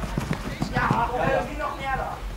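Shouting voices of players and spectators across an outdoor football pitch, with a few soft knocks in the first half second.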